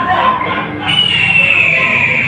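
A loud, high, steady tone starts suddenly about a second in and slowly falls in pitch, over a background of voices.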